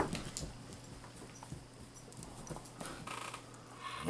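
A few scattered light clicks and taps of a saluki's claws on a wooden floor over a faint steady hum, with a brief soft sound about three seconds in.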